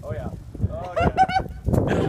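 Onlookers' high-pitched voices calling out in short, rising shouts, then several voices shouting together near the end.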